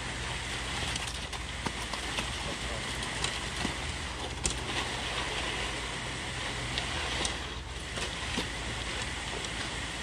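Trailer-mounted concrete line pump running steadily, a constant low drone, under the wet slop and scrape of concrete pouring from the hose and being spread with rakes, with scattered small clicks of tools.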